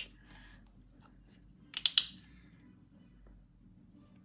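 Two sharp clicks close together about two seconds in, over faint room tone.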